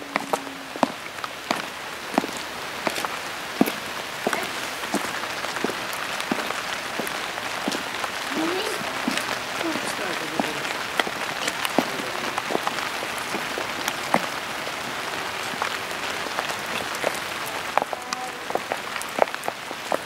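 Steady rain falling on wet stone paving, a continuous hiss broken by many short, sharp taps of drops.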